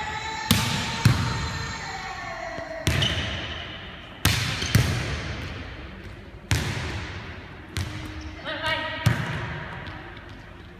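A volleyball being hit and passed in an empty gymnasium: about eight sharp slaps of the ball on hands and forearms and of the ball landing on the hardwood floor, a second or two apart, each followed by a long echo from the hall.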